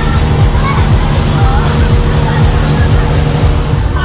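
Loud, steady low engine rumble from an illuminated carnival cart passing close by, with crowd voices faintly underneath.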